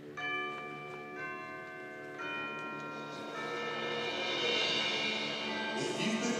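A concert band playing music: low wind notes held under bell-like mallet percussion strikes that ring on, the first three coming about a second apart, with more voices joining and the sound growing louder.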